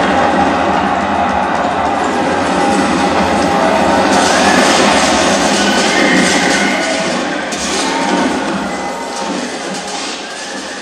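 Film soundtrack played over a hall's speakers: music under the noise of a battle scene, the clash of a cavalry charge meeting a spear line. It dies away toward the end.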